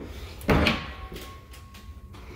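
A closet door being opened, with one loud, sudden knock about half a second in that dies away quickly.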